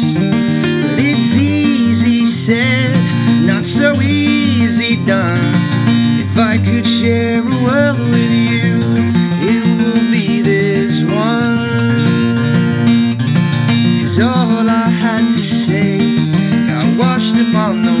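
Acoustic guitar with a capo, played solo in an instrumental passage of a song: a continuous run of picked and strummed notes.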